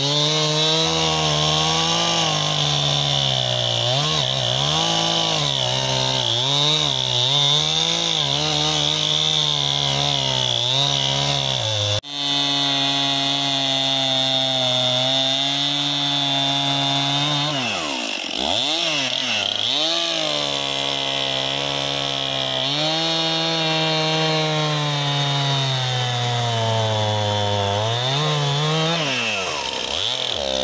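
Gasoline chainsaw cross-cutting a large cottonwood log, its engine speed sagging and recovering over and over as the chain bites into the wood. There is a brief break about twelve seconds in. Around eighteen seconds and again near the end the engine drops sharply and revs back up.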